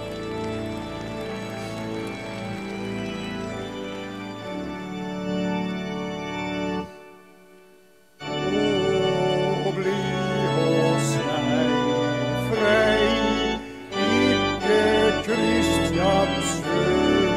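Organ music with held chords. It breaks off for about a second some seven seconds in, then comes back louder with a wavering melody line over the chords.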